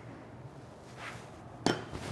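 A kitchen utensil knocking once, sharply, against a hard container, with a short ring. A softer brushing sound comes just before it.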